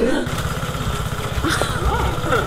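Motor scooter engine idling steadily, starting about a quarter second in, just after a woman's laughing 'Gott'. A brief sharp click comes about halfway through.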